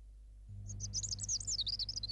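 A small bird chirping in a quick run of high twittering notes that starts just under a second in, over a low steady hum.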